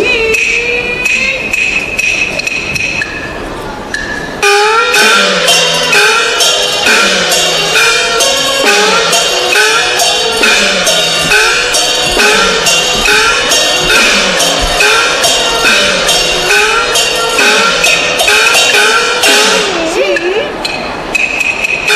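Chinese opera percussion ensemble playing a fast, regular pattern of wooden clapper and drum strokes with cymbal crashes and gongs whose pitch falls after each stroke, starting about four and a half seconds in. Before it, a performer's voice holds a long drawn-out note.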